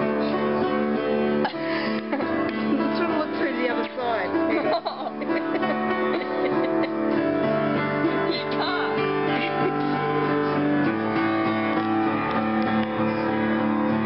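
An upright piano being played in practice, with chords and notes held for several seconds at a time. A brief wavering voice-like sound sits on top a couple of seconds in.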